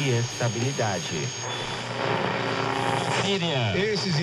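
Voices talking over a steady low drone.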